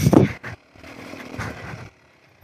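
Beta Xtrainer 300 single-cylinder two-stroke dirt bike engine running under way on a trail ride, picked up faintly by the helmet microphone. A brief loud burst of noise comes right at the start, then the engine carries on at a lower level.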